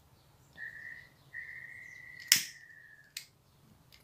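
Sharp clicks of a pocket lighter's flint wheel being struck, the loudest about halfway through, with a faint steady high whistle-like tone held for about two seconds.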